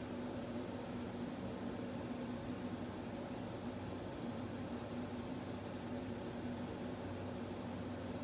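Steady room hum and hiss, with a low droning note that holds unchanged throughout.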